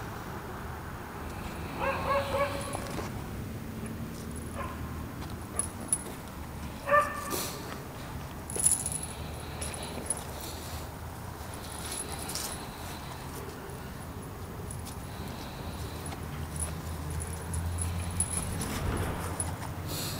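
A dog giving a few short, high-pitched yips and whimpers, the clearest about two seconds in and again around seven seconds, over a faint steady low hum.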